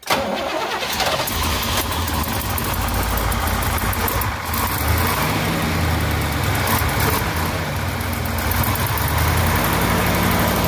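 1970 Chevrolet Chevelle SS's 454 LS6 big-block V8 starting up all at once and settling into a steady idle, its low note wavering slightly.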